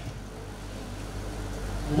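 A pause between sentences, filled with the steady background noise of a hall picked up through the microphone, with a constant low hum.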